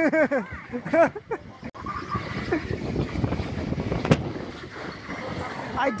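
Skyrush roller coaster train rolling along the track back toward the station with a steady rumble, and one sharp clunk about four seconds in.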